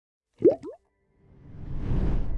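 Intro animation sound effects: two quick rising plops about half a second in, then a swelling rush that builds into music.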